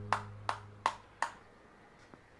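Four sharp clicks about a third of a second apart, each dying away quickly, over the fading tail of background music.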